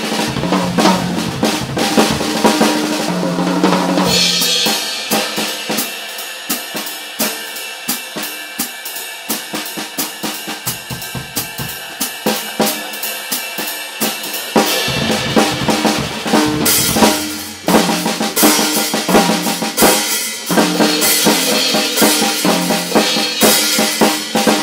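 Jazz drum kit played solo in swing feel: a break on the toms and bass drum, then from about four seconds in about ten seconds of time kept mainly on the cymbals, then back to the toms and bass drum for another break, with a short gap around the middle of that last stretch.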